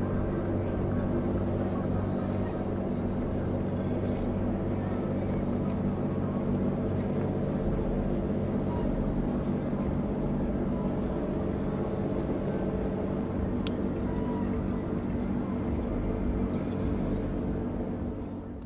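Large cruise ship's machinery giving a steady low hum of several constant tones as it pulls away from the quay, over the rushing of its propeller wash.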